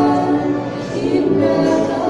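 Three girls singing a sacred song together into handheld microphones, holding long notes, with a short dip in loudness before the next phrase begins.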